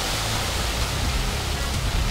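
Cartoon sound effect of a powerful jet of water gushing and spraying: a steady rushing spray that starts suddenly, with a low rumble beneath it.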